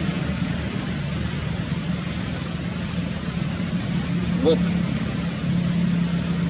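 A motor running steadily as a low hum, with a short rising-and-falling call about four and a half seconds in.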